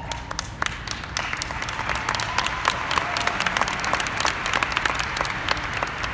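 Audience applauding, many hands clapping at once, starting a moment in and growing a little denser before holding steady.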